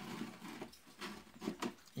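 Faint crackling and sizzling of beef fat frying in rendered tallow in a large pan, with a few scattered small pops.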